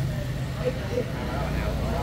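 Street traffic: motor scooters passing, their engines a steady low hum.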